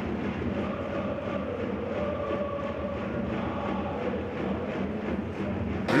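Stadium crowd noise from football supporters: a steady din with faint, drawn-out singing or chanting voices.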